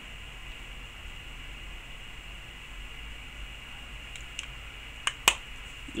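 Steady low hiss of room tone, with a few short sharp clicks or taps near the end.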